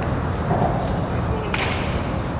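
Batting practice in a cage: one short, sharp swishing hit about one and a half seconds in, over a steady low outdoor rumble.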